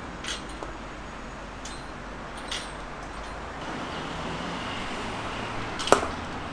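A cricket bat striking the ball with one sharp crack just before the end, the loudest sound, over a steady outdoor background hum; a few fainter short clicks come earlier.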